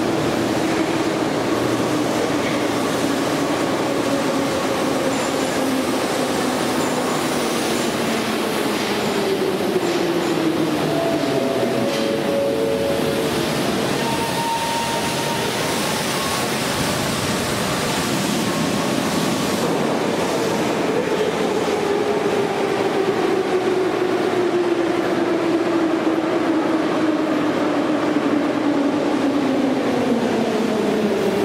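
Moscow Metro train running in an underground station: a loud, steady rumble with an electric motor whine that glides down in pitch, once in the first third and again over the last third, as trains slow. A few brief steady tones sound about halfway.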